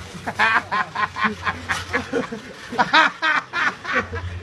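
A person laughing hard in a long string of short, pitched bursts.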